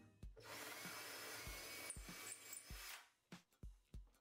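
Cordless drill boring into the wooden hard points of a model airplane's firewall, running faintly and steadily for about two and a half seconds before stopping. Low beats of background music run under it.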